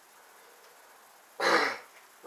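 A man clears his throat once, a short harsh burst about a second and a half in.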